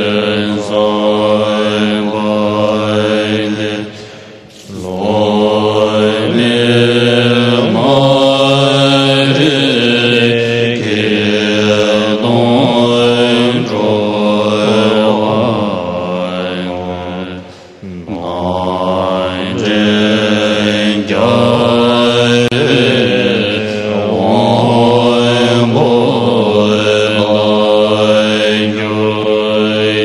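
Large assembly of Tibetan Buddhist monks chanting a verse prayer in unison, in slow, melodic, drawn-out phrases. The chant breaks briefly for breath about four seconds in and again about eighteen seconds in.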